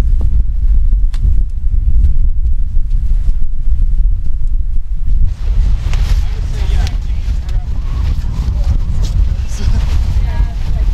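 Wind buffeting the microphone: a loud, steady low rumble throughout, with more rustling noise in the second half.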